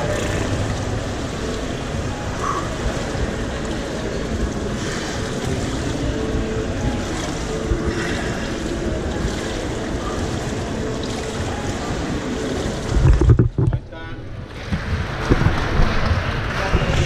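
Indoor swimming pool hall ambience: a steady, echoing wash of water movement and distant voices. About 13 seconds in comes a loud low thump, followed by about a second of muffled sound.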